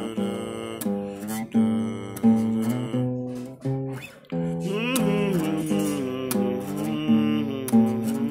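Small-bodied acoustic guitar strummed and picked through a run of chords, changing chord every second or so, with a short break about halfway through.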